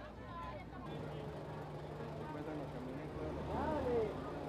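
Voices in the background over a steady low engine hum, which comes in abruptly about a second in.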